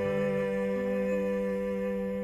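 Final chord of a sung song arrangement, held steadily.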